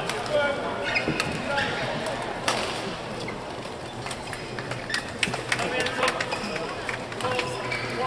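Badminton hall sound: indistinct voices echoing in a large hall, with sharp knocks of rackets hitting a shuttlecock and shoes squeaking on the court mat.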